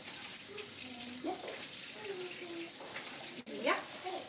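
Kitchen tap running steadily as hands are washed under it.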